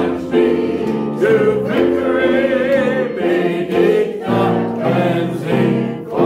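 A gospel song: voices singing long, wavering notes over sustained instrumental chords.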